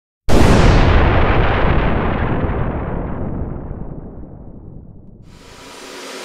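A single explosion-like boom that hits suddenly just after the start and rumbles away over about five seconds. A steady rushing background noise comes in near the end.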